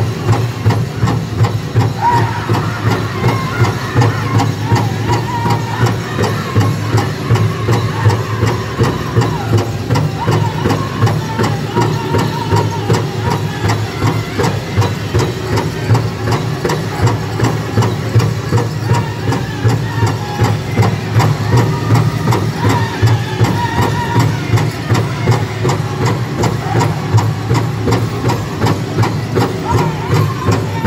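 A powwow drum group beating a large drum in a steady, even beat, with the singers' high voices coming in about two seconds in and singing over it.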